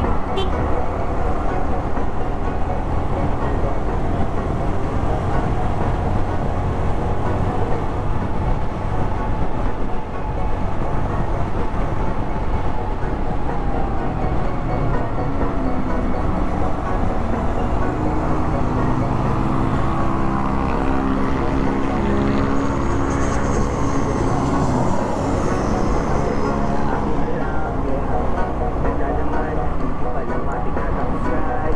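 Motorcycle engine and exhaust running at road speed, mixed with wind rush on the microphone. In the second half the engine note rises and falls with the throttle.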